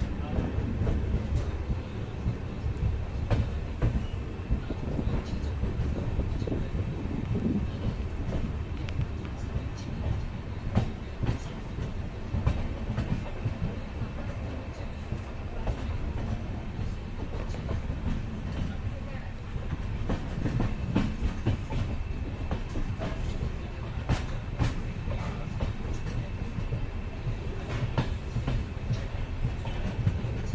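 Passenger train coach running along the track, heard from an open window: a steady low rumble of the wheels on the rails, with scattered sharp clicks.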